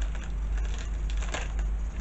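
A few faint crackles and rustles of a paper card and a small strip of adhesive tape being picked at and peeled by fingers, over a steady low hum.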